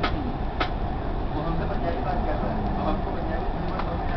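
Steady running rumble of a Dubai Metro train, heard from inside the carriage.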